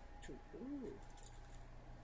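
A man's voice saying one short, quiet word, its pitch rising and then falling, over a faint steady hum.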